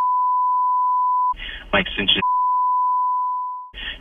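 A steady, single-pitched censor beep blanking out the caller's phone number and name in a played-back voicemail. It breaks off about a second in for a brief snatch of the caller's thin phone-line voice, then a second beep follows and fades out near the end.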